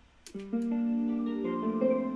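Sampled guitar from the free Spitfire Audio LABS plugin playing back a melody of plucked notes that overlap and ring on, run through chorus, phaser and reverb effects. A short click comes about a quarter second in, just before the first note.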